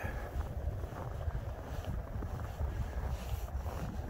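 Wind buffeting the microphone outdoors, an uneven low rumble that rises and falls.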